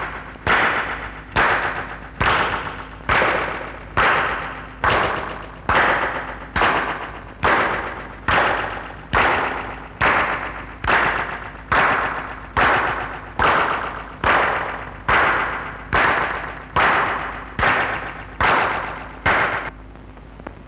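A steady run of sharp strikes, a little more than one a second and about two dozen in all, each dying away before the next, over a faint steady hum. The strikes stop near the end.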